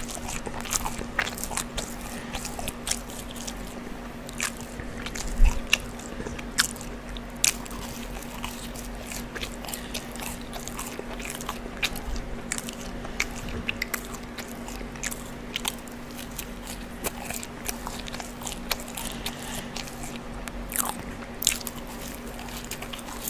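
Close-miked mouth sounds of eating a brisket sandwich and crinkle-cut fries: chewing with many sharp, irregular clicks and crunches. A faint steady hum runs underneath.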